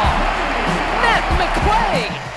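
Noise of a basketball arena crowd during live play, with many short, sharp squeaks that bend in pitch, typical of sneakers on a hardwood court.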